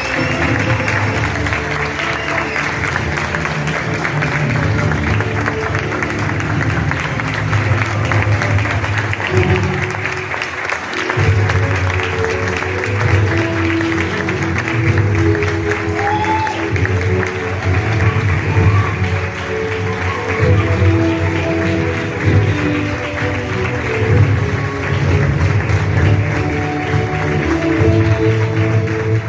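Audience applauding steadily over music with a strong bass line.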